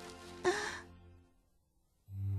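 A crying boy's brief sob, a short voiced catch of breath about half a second in, over soft music that fades away to near silence.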